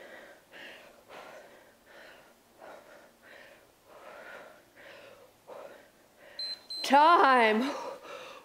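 A woman's heavy rhythmic breathing during double crunches, a puff of breath about every 0.6 seconds. Near the end comes a short high beep, then a loud drawn-out vocal exclamation as the set finishes.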